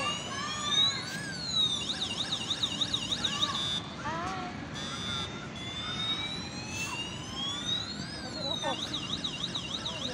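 Electronic police-siren sound effect. It plays a wail that rises and falls, then a fast yelp of about four sweeps a second, and the cycle repeats twice.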